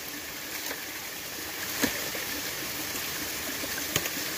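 Creek water running, a steady rush, with one short click a little before halfway through.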